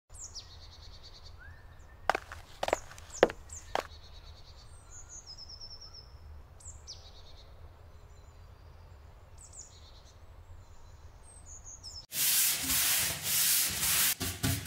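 Birds chirping and calling in woodland over a low steady background noise, with four sharp clicks in quick succession about two to four seconds in. About two seconds before the end, a sudden loud, noisy sound with rapid pulses cuts in.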